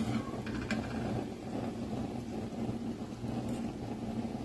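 A steady low mechanical hum, with a few faint light clicks about half a second in.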